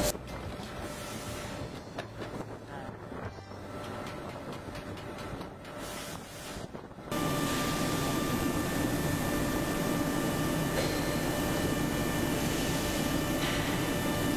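A bench drill press at work on aluminium profiles, a fairly quiet stretch with light clicks and knocks. About halfway through it cuts abruptly to the louder, steady hum of powder-coating line machinery, with several steady whining tones held throughout.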